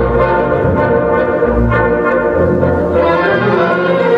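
Orchestral music with brass, holding sustained chords in an instrumental passage, no singing yet.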